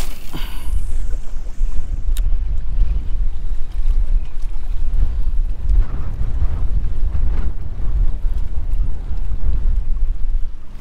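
Wind buffeting the microphone in a steady low rumble, over the wash of choppy water.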